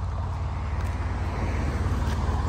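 Road traffic: a car's engine and tyre noise building steadily as it approaches along the road.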